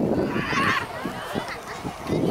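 High-pitched children's shouts during a youth football game, one loud shout about half a second in, then fainter calls, over a low rumbling haze.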